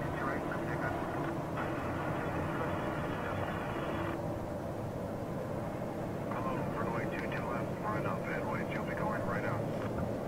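Jet airliner engines heard as a steady distant rumble, with air traffic control radio over it: a stretch of radio hiss from about one and a half seconds to four seconds, then indistinct radio voices through the second half.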